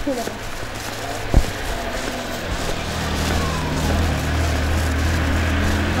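A motor vehicle's engine running, a steady low hum that grows louder over the second half, with one sharp knock about a second and a half in.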